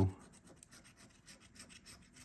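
A coin scraping the coating off a scratch-off lottery ticket in quick, faint, repeated strokes.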